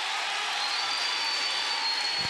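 Audience applause: a dense, steady clapping from a large crowd greeting a speaker who has just been introduced, with a faint high steady tone joining about a third of the way in.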